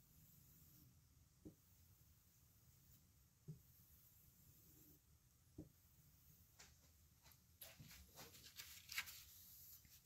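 Faint strokes of a chef knife's edge drawn across a strop block loaded with buffing compound, with soft knocks about every two seconds. Light clicks and scratchy rustles come in over the last few seconds.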